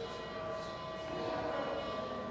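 A brass hand bell rung continuously in temple worship, its ringing tones holding steady.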